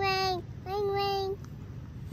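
A young girl singing two long, level notes, each about half a second, in imitation of a phone ringing as she holds a toy shovel to her ear as a pretend phone.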